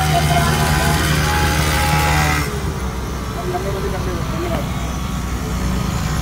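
Street traffic: a motor vehicle's engine running steadily close by, under a broad rush of traffic noise that drops off about two and a half seconds in. Faint voices.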